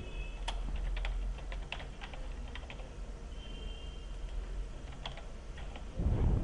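Computer keyboard being typed on, irregular key clicks, over a steady low hum.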